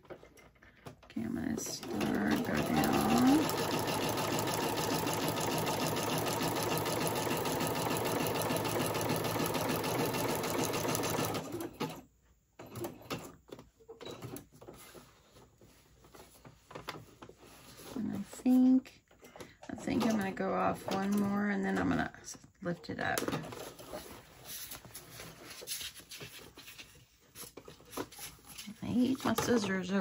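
Singer computerized sewing machine stitching a seam through layered patterned paper, running steadily for about ten seconds and then stopping. Light clicks and handling of the paper follow.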